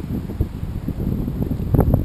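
Wind buffeting the camera's microphone: an irregular low rumble that rises and falls in gusts.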